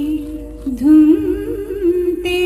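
Devotional song with a single voice holding a long hummed note. About half a second in it dips and fades briefly, then returns with a wavering, ornamented melodic line.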